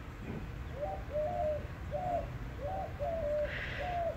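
A dove cooing: a run of soft, low coos, about one every half second to a second.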